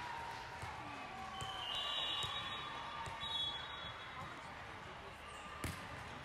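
Indoor volleyball hall ambience: a steady hubbub of voices with scattered ball thuds and brief high sneaker squeaks on the hardwood courts. Near the end a single sharp slap of a volleyball being struck stands out as the loudest sound.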